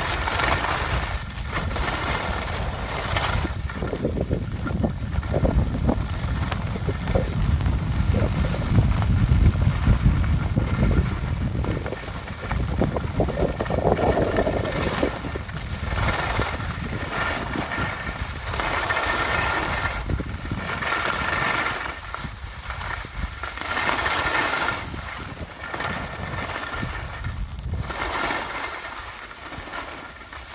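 Wind buffeting a phone microphone during a ski descent, a low rumble that is heaviest in the first half. Over it, skis hiss as they carve across groomed snow, a swish every second or two with each turn.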